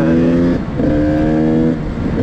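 KTM SX 85's two-stroke single-cylinder engine under way, being shifted up through the gears. The steady engine note breaks off briefly at a gear change about half a second in, picks up again and eases off near the end.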